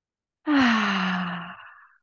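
A woman's long voiced sigh, starting about half a second in, falling in pitch and fading away over about a second and a half.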